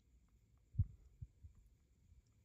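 Faint room tone with a short, dull low thump a little under a second in and a weaker one about half a second later.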